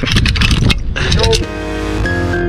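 Metal zipline hardware clinking and clicking: the pulley trolley and carabiners being clipped onto the steel cable, over a low wind rumble on the microphone. About one and a half seconds in, it cuts off and music begins.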